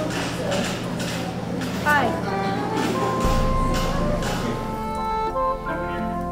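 Background music with held notes, and a voice in it.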